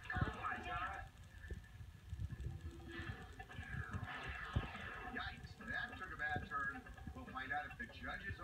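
Indistinct voices and commotion from a courtroom TV show, played through a television's speaker and picked up by a phone, with a couple of short dull thumps.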